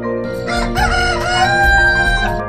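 A rooster crowing once: one long call that rises and then holds a high note, over soft background music. It is the third crow of the night.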